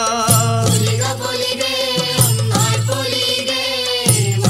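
Malayalam folk song (nadan pattu) playing: a wavering, chant-like sung melody over a steady low drone, with two drum strikes about two seconds apart.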